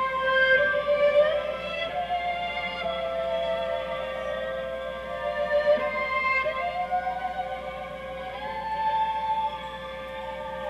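Bowed strings playing slow notes that slide from pitch to pitch over one steady held drone note, in an instrumental progressive-rock passage with no voice.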